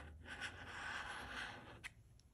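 Metal bottle opener scraping the coating off a paper scratch-off lottery ticket in one continuous stroke of about a second and a half, with a click near the end.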